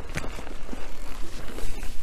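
Mountain bike rolling down a dirt trail: tyre noise on loose soil and leaves, with quick rattles and knocks from the bike, over a low wind rumble on the microphone.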